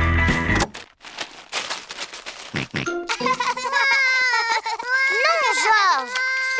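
Cartoon party music cuts off suddenly under a second in, the stop in a game of pass the parcel. Wrapping paper is then torn off the parcel in a quick run of rips. From about three seconds a child's voice calls out in long, gliding, sing-song tones.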